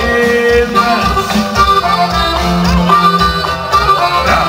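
A live band playing a song, with long held notes over a steady bass pulse.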